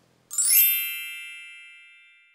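A single bright bell-like chime sound effect, struck about a third of a second in and ringing out in a slow fade.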